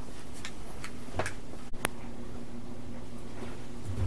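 Quiet room tone with a steady low hum, a few faint light clicks, and one sharp click a little under two seconds in.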